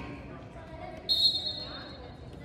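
Basketball bouncing on a gym floor in a large echoing hall, with a short, shrill referee's whistle blast about a second in.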